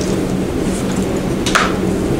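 Steady rumbling room noise with a low hum in a crowded hall, and one sharp click about one and a half seconds in.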